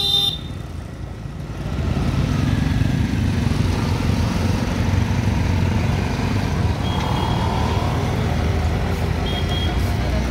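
Street traffic: motor scooters, cars and an auto-rickshaw running past with a steady engine rumble that swells about a second and a half in. A couple of short horn toots come in the second half.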